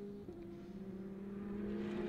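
GT race car engines heard faintly from the trackside, a steady engine note that dips slightly in pitch early on and grows gradually louder.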